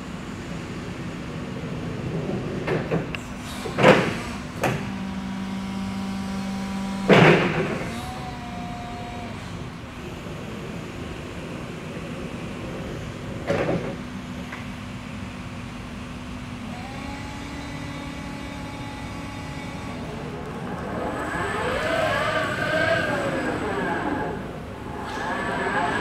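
Linde E30-03 electric forklift lowering its raised mast: a steady motor hum with a few loud metallic clunks as the mast stages come down. Near the end the traction motor whines up and down as the truck drives off.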